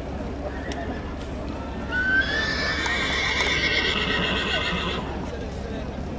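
A horse neighing: one long whinny of about three seconds, starting about two seconds in.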